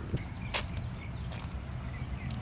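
A quiet, steady low rumble with a few light clicks, the clearest about half a second in.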